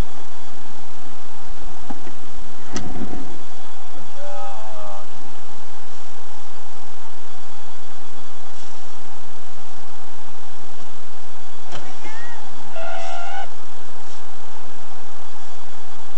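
Car driving slowly, heard as loud steady noise through a dashcam's own microphone. There is a single knock about three seconds in, and short wavering pitched sounds come around four seconds in and again near the end.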